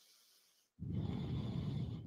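A person's deep breath, a steady rush of air that begins about a second in and lasts about a second.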